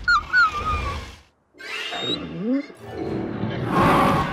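A cartoon dragon's cries over background music: a high falling call at the start, a brief silent gap just after a second, then a short rising call, with the music swelling near the end.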